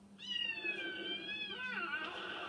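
One long cat meow, held at a level pitch and then falling at the end, played through a television's speaker.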